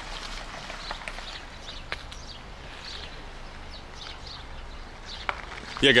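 Footsteps walking on wet, slushy pavement, about two steps a second, over a low steady outdoor hum with a few sharp clicks.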